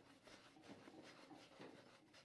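Near silence with faint rubbing of a small piece of dough being kneaded smooth by hand on a floured wooden board.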